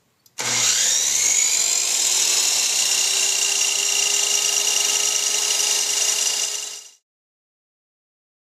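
Electric miter saw switched on: the motor and blade spin up with a rising whine within the first second, then run steadily at full speed, loud, until the sound cuts off abruptly about seven seconds in.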